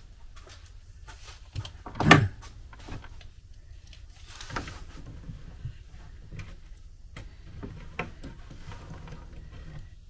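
Handling noise from a tape measure and pencil on a timber frame: one loud sharp knock about two seconds in, a scraping rustle around the middle, and scattered light clicks and taps.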